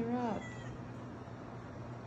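A house cat's short meow, falling in pitch, right at the start, from cats begging to be let out the door.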